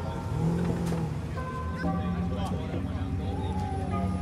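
A car engine running low as a car pulls slowly away, mixed with background music and people talking.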